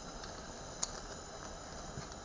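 Handling of a plastic packet of Coleman mantles: one small crisp click a little under a second in, over a steady faint hiss.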